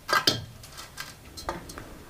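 A few sharp clinks and light knocks from a metal straightedge with a plumb bob hung on it being adjusted against a brick wall to set it plumb. The two loudest clinks come in the first half second; fainter knocks follow.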